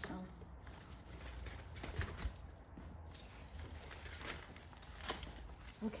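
Handling noise of leafy branches and stems being pushed into a wreath base: soft rustling with a few sharp knocks, the clearest about two seconds in and near the end, over a low steady hum.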